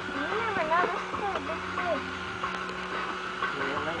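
Electric fishing reel motor running steadily with a humming whine as it winds in line against a hooked fish, with faint voices over it in the first half.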